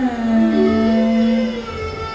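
Carnatic classical music from voice and violin: a long held note with slow gliding lines above it, easing off near the end.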